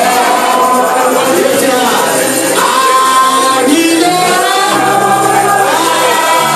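A group of voices singing a gospel praise song loudly, over held low accompaniment notes.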